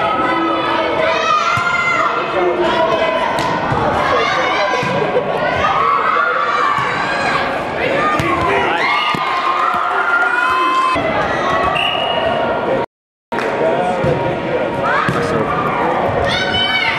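Many girls' voices shouting and calling over one another in a large, echoing gym, with the thuds of a volleyball being struck and bouncing on the hardwood floor. The sound cuts out for a moment about two-thirds of the way through.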